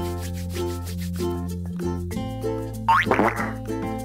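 Bouncy children's background music with a steady bass line and repeated short chords. About three seconds in, a brief cartoon sound effect sounds over it: a quick rising glide that breaks into a wobble.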